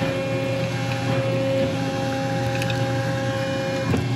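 Hydraulic press running: a steady hum with a held whine, joined by a second higher tone about a second in, that cuts off with a click just before the end.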